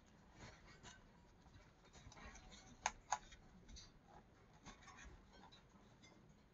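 Near silence, with the faint rustle of a hand resting on and rubbing a coloring book's paper page. Two short sharp clicks come close together about three seconds in.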